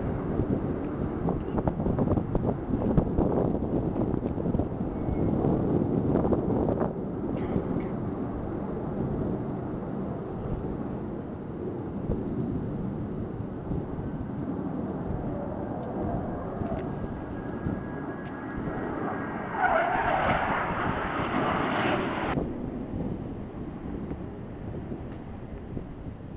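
Distant jet roar from a formation of Blue Angels jets, mixed with wind buffeting the microphone. A louder, higher rush comes in near the end and stops abruptly.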